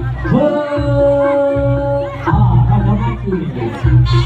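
Javanese jaranan ensemble music with drums beating steadily through a loudspeaker system. Over it a voice on the microphone rises into one long held call about a third of a second in, then holds a second note near the end.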